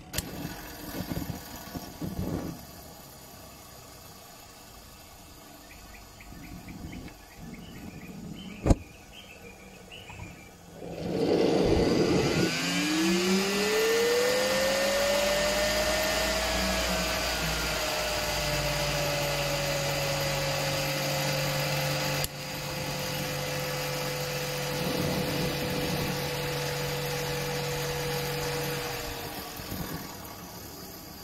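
A homemade small jet engine starting: after a few clicks and a sharp snap, a loud rushing sound comes in about 11 s in. A whine rises in pitch over several seconds as the turbine spools up, then eases slightly and holds steady with a lower hum under it. The sound drops away near the end.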